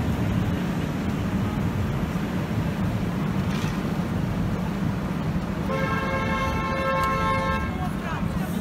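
Busy street traffic and crowd noise, with a vehicle horn sounding one steady blast of about two seconds near the end.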